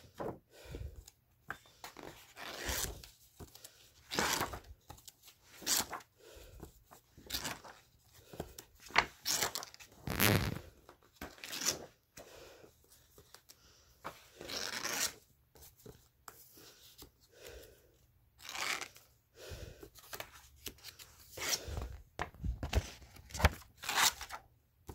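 Paper rustling and crinkling in irregular bursts as sheets of a drawing pad are turned over and handled.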